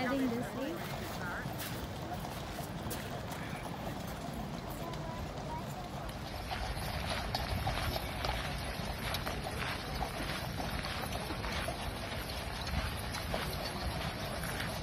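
Hooves of a column of cavalry horses walking on a gravel parade ground: an irregular run of clip-clopping hoofbeats, clearer and more frequent from about six seconds in.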